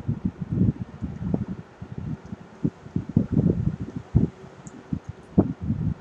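Irregular low rustling and soft bumps, with an occasional sharper click: handling noise picked up by the microphone while writing with a stylus on a tablet.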